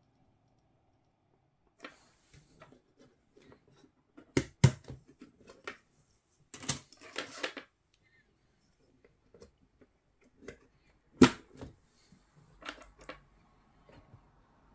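Clicks and light knocks of RAM sticks being swapped in a desktop motherboard's memory slots: the slot latches snap and the sticks are handled. The loudest snaps come about four and a half seconds and eleven seconds in.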